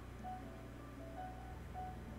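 Faint jazz music playing from a computer: a melody of short, stepping notes over a steady low hum.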